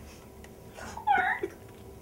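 A cat meowing once, a short call about a second in.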